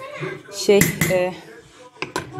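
A woman's single spoken word, with one sharp metal clink about a second in, typical of a metal spoon set into a stainless steel cooking pot.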